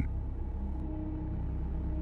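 Steady low rumble of a background rain-storm ambience, with faint hiss and a faint held tone beneath it.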